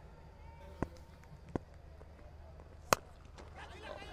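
A cricket bat striking the ball once: a single sharp crack about three seconds in, the loudest sound here, skying the ball high into the air. Two softer knocks come before it, over a faint stadium background.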